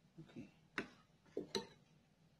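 A few sharp clinks as a metal spoon and a small glass food-colouring bottle knock against the ceramic mixing bowl and table, the spoon going into the batter to stir in the purple colouring.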